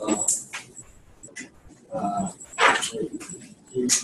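Indistinct voices of people talking a little way from the microphone, with a brief hiss about two and a half seconds in.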